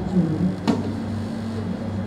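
A steady low electrical hum, after a few words of speech at the start, with a single sharp click just under a second in.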